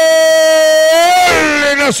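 Radio football commentator's long held shout of "gol", celebrating a goal: one steady high note that lifts slightly, then falls away about a second and a half in and breaks into rapid speech near the end.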